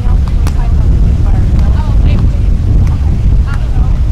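Wind buffeting the microphone, a loud steady low rumble, with distant voices calling faintly over it and a few sharp taps.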